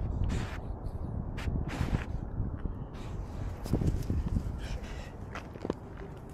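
A small dog sniffing and stepping through grass right by the microphone: a few short sniffs and rustles over a low wind rumble.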